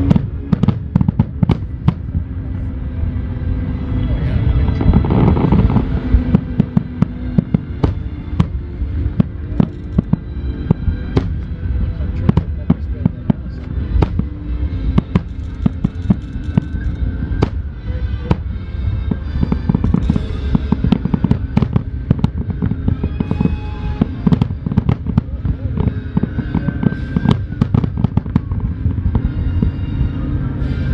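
Nagaoka aerial firework shells bursting in dense, rapid volleys: many sharp bangs one after another over a deep rolling rumble, heaviest about five seconds in.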